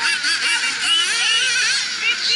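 Several nitro RC buggies' small two-stroke glow engines running at once, their high-pitched whine rising and falling repeatedly and overlapping as they rev down the straights and lift off for the turns.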